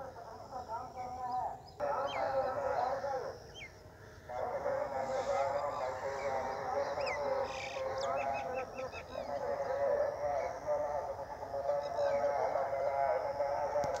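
Birds calling: a dense, continuous chatter of overlapping calls with short rising chirps scattered through it, quieter for about a second around the four-second mark.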